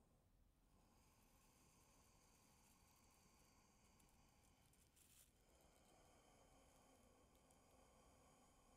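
Near silence: room tone, with one brief faint noise about five seconds in.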